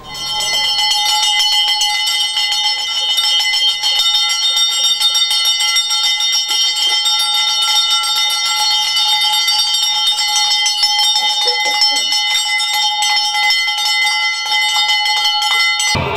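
Worship bell rung continuously during a puja, a steady shimmering ring of several bright tones held at an even level, cutting off suddenly at the end.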